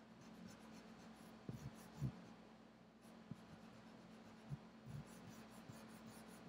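Faint scrubbing of an eraser rubbed in short strokes over graphite on drawing paper, lightening a shaded area, with a few soft knocks in between.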